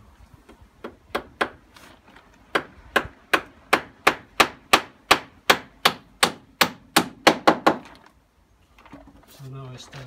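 Claw hammer driving a nail into a rough-sawn timber fence paling: a few light taps, then a steady run of blows about three a second that grow louder, stopping about eight seconds in.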